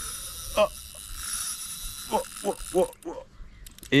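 Spinning reel's drag buzzing steadily as a big pike pulls line off against a light drag setting, stopping about three seconds in. The drag is set light because the thin 0.16 mm line would break if it were tightened.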